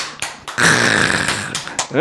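A long breathy sound from a person's voice lasting about a second, with a few short clicks before it and a brief spoken word at the very end.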